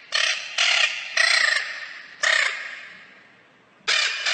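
A bird's harsh, caw-like calls: four in about two seconds, the last trailing away slowly, then another right at the end.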